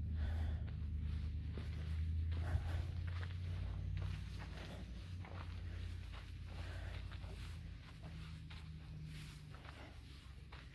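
Footsteps of someone walking over dirt, under a low rumble that fades after about four seconds.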